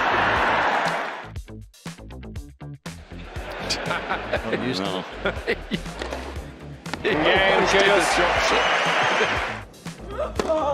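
Tennis match sound: tennis balls struck and bouncing in a few sharp knocks, with loud crowd noise and voices swelling near the end, over a music bed.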